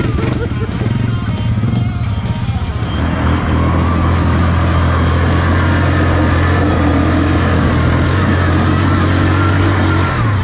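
Quad bike (ATV) engine running, uneven for the first few seconds, then from about three seconds in a louder, steady engine note held under load as the quad spins its wheels on loose dirt.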